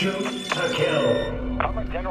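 Sci-fi film soundtrack: electronic display beeps and steady tones over the score, with a deep low rumble coming in about a second in.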